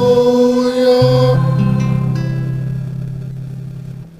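The closing of a hymn: singers and a nylon-string classical guitar hold a final chord, the higher held notes breaking off about a second in, then the guitar's low notes ring on and fade away.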